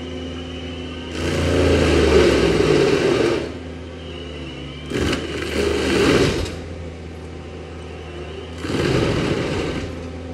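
Cat compact track loader's engine running with a steady hum, and its forestry mulcher drum grinding into a stump and brush in three loud spells: about a second in, around five seconds, and near the end.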